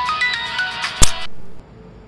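A mobile phone ringtone playing a stepping melody. A sharp click about a second in, then the ringing cuts off abruptly as the call is answered.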